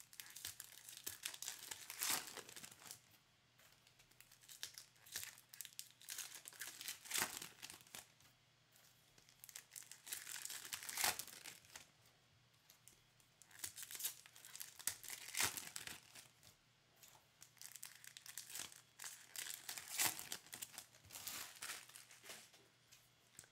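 Foil wrappers of Topps baseball card packs being torn open and crinkled by hand, in clusters of rustling and tearing every few seconds, with the cards handled and stacked in the quieter stretches between.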